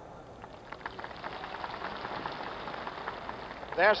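Applause from a ballpark crowd, a steady crackle of many hands clapping that fills in about a second in.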